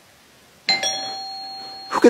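A doorbell chime rings once about two-thirds of a second in, its tone dying away slowly.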